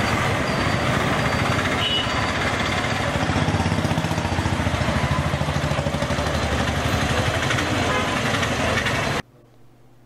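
Street traffic at a busy junction: the engines of auto-rickshaws, motorcycles and cars running and passing close by, with a short high tone about two seconds in. The sound cuts off suddenly a second before the end.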